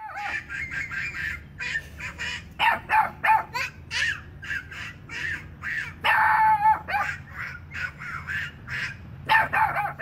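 Boston terrier barking over and over in a quick string of short barks, about two to three a second, with a longer drawn-out bark just after six seconds and another near the end.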